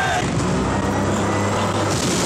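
Car engine running with a steady low drone over a wash of road noise.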